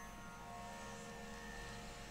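A faint steady hum with a few faint steady tones held through it.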